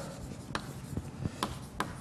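Chalk writing on a chalkboard: faint scratching strokes broken by a few short, sharp taps of the chalk against the board.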